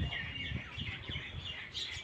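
Faint birds chirping in the background, a few short high calls with a brief thin whistle near the start.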